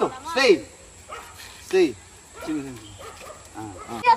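A pit bull barking about three times, short rising-and-falling barks spread over a couple of seconds.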